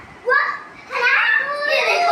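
Young children's high-pitched voices calling out as they play. There is a short cry just after the start, then longer drawn-out vocalising from about a second in.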